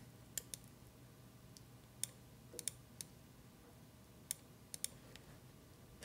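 Faint, scattered computer mouse clicks, about ten in all, some coming in quick pairs.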